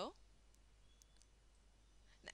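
Near silence: room tone with a few faint clicks from a computer mouse.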